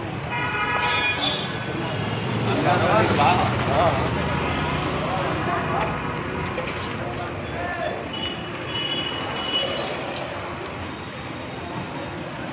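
Street traffic noise with vehicle horns honking, one horn sounding briefly near the start and a fainter one later, over people's voices.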